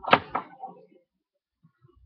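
Scissors snipping through a sock: a few sharp snips in the first half second, the first the loudest, then near quiet with a few faint thumps.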